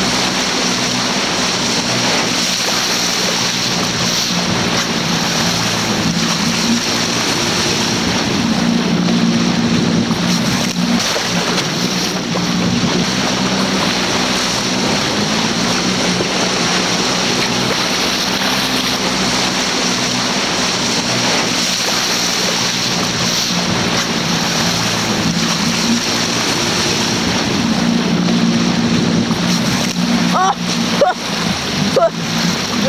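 Small motorboat's engine running steadily with a low hum, over a constant rush of water along the hull.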